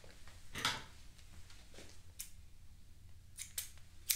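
Scissors snipping: a few short faint cuts, two of them close together near the end.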